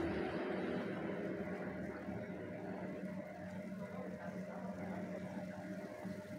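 Dark spice paste frying in oil in a pan, a soft steady sizzle as a spatula stirs it, with a faint steady hum underneath. The paste is being fried down until its water is cooked off and it turns oily.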